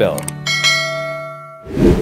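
A bell-like chime sound effect rings out about half a second in and fades away over about a second, followed near the end by a short swelling whoosh.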